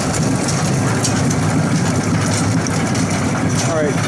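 Roller coaster train climbing its lift hill: a steady, heavy mechanical rattle from the lift and the car's wheels on the track.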